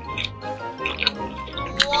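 Wet, close-miked chewing and mouth sounds of a person eating egg sushi, with a few short clicks, over steady background music.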